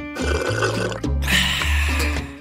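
Background music with a steady bass line. Over it, a gurgling slurp of drink through a straw for about a second, followed by a short breathy hiss.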